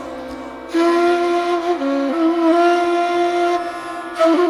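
Persian ney playing long held notes over a tanpura drone. The ney is silent at first, leaving the drone alone, then enters about a second in with a long sustained note that dips briefly around two seconds in before returning, and breaks off near the end.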